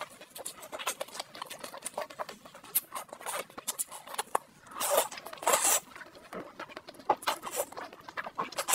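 Close-miked eating sounds: roast chicken meat torn apart by gloved hands, then wet chewing and lip smacks in quick irregular bursts. The loudest bursts come about five seconds in.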